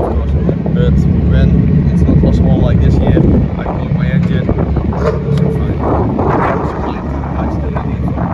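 A vehicle engine running with a steady low hum, which drops in level about three and a half seconds in, under the chatter of voices.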